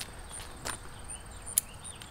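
Crickets chirping steadily in the background, with a few sharp clicks; the loudest comes near the end.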